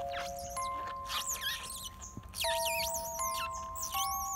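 Background music with long held notes, over repeated high-pitched wavering squeaks from twelve-day-old otter pups nursing.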